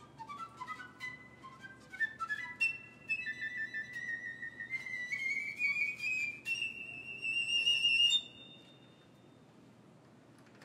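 Piccolo playing quick, short notes that leap up and down, imitating a hare's leaps and bounds, then a long wavering run that climbs to a high note and stops about eight seconds in.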